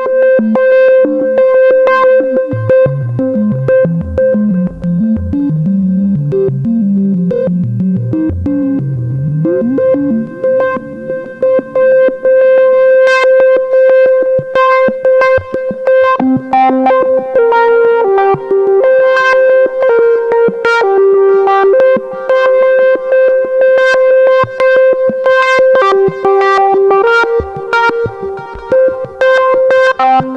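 Korg MS-20 analog synthesizer holding a note from its two oscillators while sample-and-hold, fed from the pink noise source, steps the low-pass filter cutoff at random on each tick of the modulation generator clock, giving a quick run of random stepped bleeps. In the first ten seconds the high-pass filter is turned up and the low end thins out.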